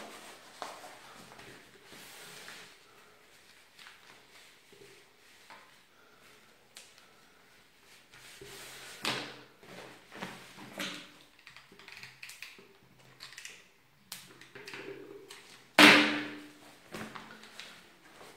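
Fabric being handled, folded and laid over an upholstered chair seat on a table: soft rustling with scattered knocks and taps, and one sharper, louder knock near the end.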